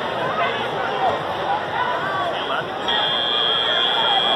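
Crowd chatter and voices in a large hall. About three seconds in, a loud steady high-pitched buzzer starts and holds: the end-of-match buzzer of a robot competition.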